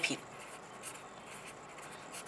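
Pen writing on paper: faint, short scratching strokes as words are written out.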